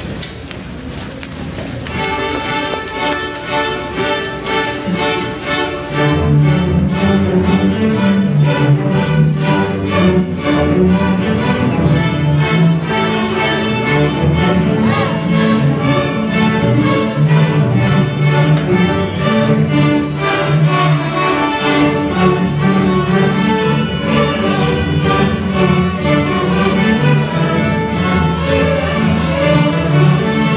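Elementary-school string orchestra of fifth graders (violins, violas, cellos and basses) playing a piece together. The strings come in about two seconds in, and a low part joins about six seconds in, after which the playing is louder and fuller.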